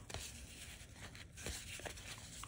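Faint rustling and a few light flicks of cardboard trading cards sliding against each other as a fanned stack is thumbed through by hand.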